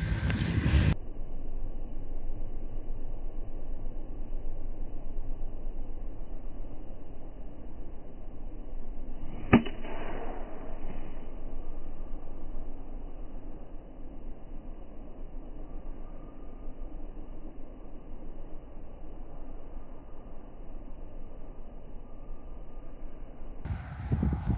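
Golf iron striking the ball on a tee shot: one sharp crack about ten seconds in, with a short ringing smear after it, over dull, muffled background noise.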